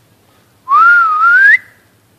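A person whistling once, loud, for about a second from just over half a second in. The pitch climbs, dips slightly, then rises higher before stopping sharply. It is a call whistled out to draw a response.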